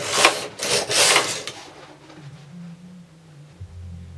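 Knitting machine carriage pushed across the needle bed to knit a row: a noisy metal-on-metal slide lasting about a second and a half, followed by quieter handling.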